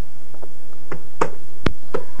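A few short, sharp clicks and taps over a faint hiss, coming in the second half.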